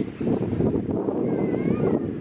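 Wind buffeting the camera's microphone: a loud, steady low rumble.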